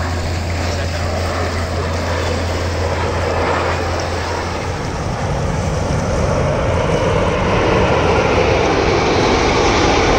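BAE Hawk T1 jets of the Red Arrows flying past in formation: a steady rushing jet-engine noise that grows louder over the last few seconds. A low steady hum underneath stops about halfway through.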